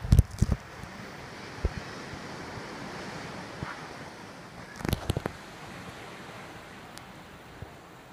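Steady wash of sea surf and wind, with short clusters of loud thumps at the start and again about five seconds in.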